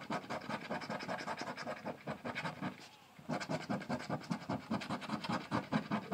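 A coin scratching the coating off a scratch-off lottery ticket in rapid back-and-forth strokes, with a short pause about halfway through.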